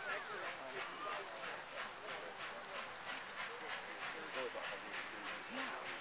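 Nickel Plate Road 765, a 1944 Lima-built steam locomotive, approaching at a distance, its exhaust beating in a steady rhythm of about three chuffs a second. Onlookers chatter over it.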